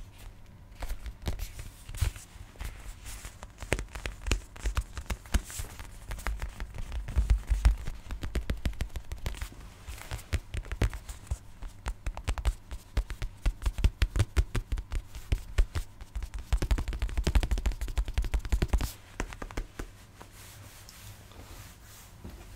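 Close-miked ASMR tapping and scratching on a black rectangular object: dense runs of quick clicks, dying down a few seconds before the end.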